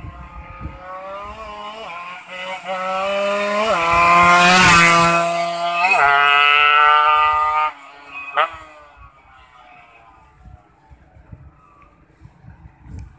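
Racing underbone motorcycle accelerating hard toward the listener, its engine note climbing in pitch through gear changes. It passes by close about eight seconds in, the pitch dropping sharply, and fades quickly away.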